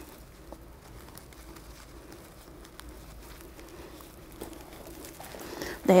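Faint rustling of a cloth sash and a few small clicks as a decorative pin is fastened to it, over quiet room tone with a low steady hum.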